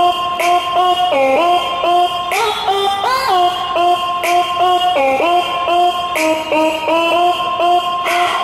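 Recorded dance-pop backing track over a stage PA speaker: a synth lead plays a repeating melody with short slides between notes, with no vocals, and a bright hit about every two seconds.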